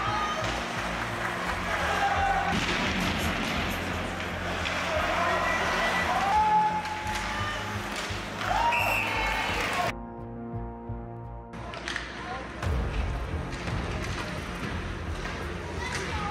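Background music with a steady bass line over ice hockey game sound with voices; the sound drops out and changes briefly about ten seconds in.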